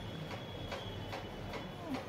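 Faint short clicks repeating about three times a second, over a faint steady high-pitched whine.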